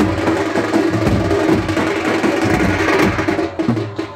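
Loud, fast, steady drumming, percussion music with a held tone running underneath.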